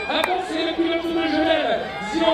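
A man's voice speaking: the race commentator talking continuously, with a sharp click just after the start.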